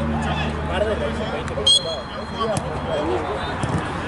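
Voices of players calling across a football pitch, with one short, sharp blast of a referee's whistle a little under two seconds in, the loudest sound; a laugh near the end.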